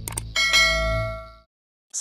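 Two quick click sound effects followed by a bright bell ding that rings for about a second and fades out: a subscribe-button and notification-bell sound effect.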